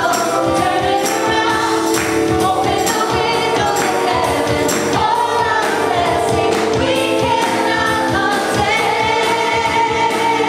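A group of women singing a gospel worship song in harmony, holding long notes, with a tambourine keeping the beat.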